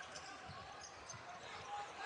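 Faint sound of a basketball game in play heard under the broadcast: a low, even crowd murmur with a few dull thuds of a dribbled ball in the first half.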